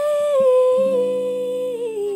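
A singer's voice holding one long sung note that steps down in pitch twice, with a strummed acoustic guitar chord entering underneath about a second in and ringing on.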